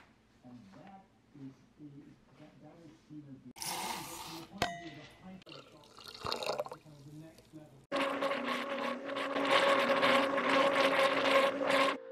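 Water splashes into a blender jar of oats for about a second, then from about eight seconds in the blender motor runs steadily, whirring loudly as it blends the oats and water into oat milk.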